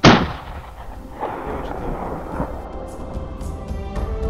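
A single hunting-rifle shot, sharp and loud, dying away over about a second, with a softer second report just after a second in.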